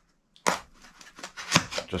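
A knife point jabbing and scraping into a white packaging block while it is handled, in short irregular scrapes and clicks. A sharp scrape comes about half a second in, and a louder knock about a second and a half in.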